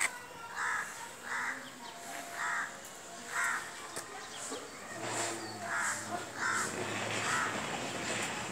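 A crow cawing repeatedly, about eight short harsh calls spaced under a second apart.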